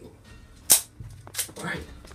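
A single sharp click about two-thirds of a second in, the loudest sound here, followed by brief vocal noises.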